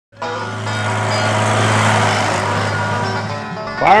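Music with a steady held low note under a dense layer of sustained tones, fading a little just before a shouted voice near the end.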